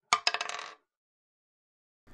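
A sound effect of rapid metallic clinks with a ringing tone, starting abruptly with the loudest clink and dying away in under a second.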